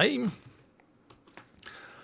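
A few faint keystrokes on a computer keyboard, after the tail of a spoken word.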